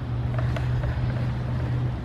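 A steady low mechanical hum, like a motor running in the background.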